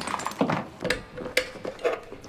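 A few light clicks and knocks of equipment being handled, the sharpest about a second in and again half a second later, as the MEOPA gas mask and its tubing are being set up and clipped on.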